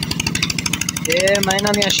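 A small engine running steadily in the background, giving a fast, even putter. A voice starts about a second in.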